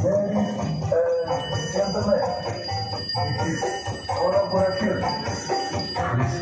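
Loud music played through a truck-mounted parade sound system: a melody that keeps changing, with jingling, bell-like percussion.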